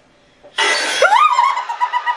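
A horror-film jump scare: a sudden loud burst of noise about half a second in, then a woman's scream that rises quickly and is held high.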